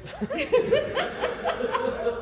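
A person laughing: a quick run of short chuckles, about four or five a second.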